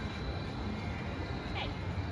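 Steady low rumble of outdoor background noise with faint distant voices, and a brief high chirp about one and a half seconds in.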